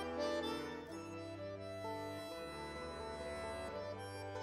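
Accordion and classical guitar duo playing a classical piece. The accordion holds long sustained chords over a low bass note.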